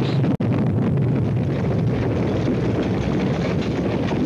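A large fire burning with a steady, dense rushing noise, broken once by a momentary dropout near the start.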